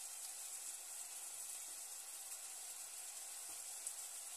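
Slices of white bread frying in oil in a nonstick pan: a faint, steady sizzle.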